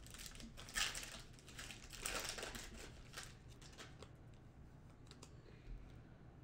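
A stack of trading cards being handled and flipped through by hand: soft rustles and slides of card stock, the strongest just under a second in and again around two seconds, then a few faint ticks.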